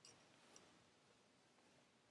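Near silence, with two faint clicks, one at the start and one about half a second in, from handling a tapestry needle and yarn on a small wooden mini loom.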